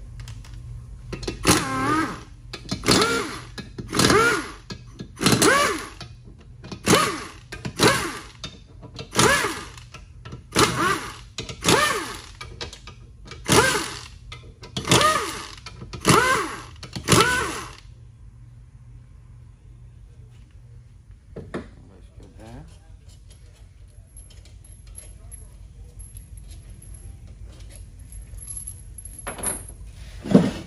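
A 6L90E transmission's front pump squeaks and creaks in the case bore as it is twisted back and forth to work it loose, its large O-ring still holding it. About a dozen squeaks come at an even rhythm, roughly one a second, and stop about two-thirds of the way through, leaving only a few faint knocks.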